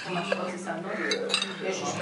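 Metal cutlery clinking against china dishes as soup is served, a few light clinks about a second in, with voices around the table.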